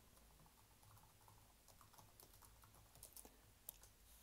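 Near silence: faint room tone with scattered light clicks, more of them in the second half and one sharper click shortly before the end.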